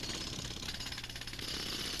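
Pneumatic jackhammer breaking up concrete, a steady rapid hammering at moderate level.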